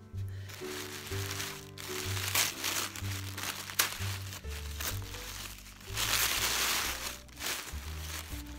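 Paper wrapping crinkling and rustling as a gift package is pulled open, in irregular bursts with a sharp snap near the middle and the loudest stretch about six to seven seconds in, over background music.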